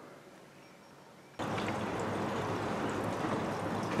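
Steady rain noise that starts abruptly about a second and a half in, after a quiet stretch.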